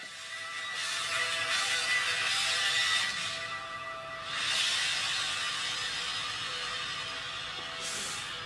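Quiet cinematic trailer music: a few held tones under an airy whooshing wash that swells twice.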